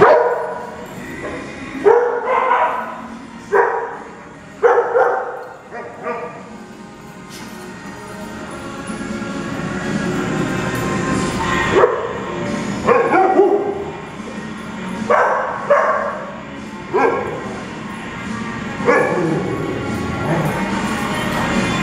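Dogs barking in a playgroup: a dozen or so sharp barks in two runs, with a quieter lull in the middle.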